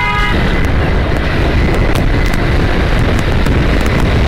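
Ducati Scrambler's air-cooled 803 cc L-twin engine running on the move, mixed with heavy wind rush on the microphone. A horn ends its blast just after the start.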